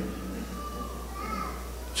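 Faint background voices in a hall over a steady low hum, with a brief faint high voice-like sound just past the middle.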